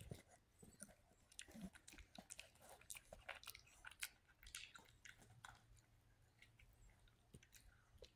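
A small dog chewing and crunching a treat: a run of faint crunches that thins out over the second half.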